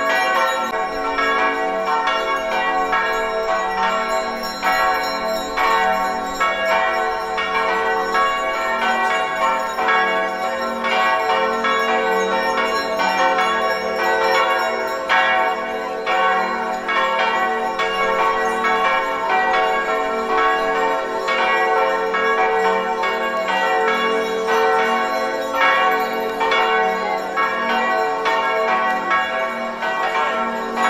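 Bells ringing continuously, with many overlapping strokes and a sustained ringing.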